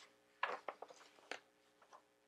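Paper pages of a handmade junk journal being turned by hand: a few short, soft rustles and flicks, the loudest about half a second in and another a little past one second.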